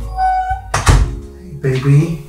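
A door being shut with a single thunk just under a second in, over background music.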